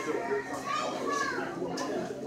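Children's voices talking and playing, with the chatter of other voices mixed in.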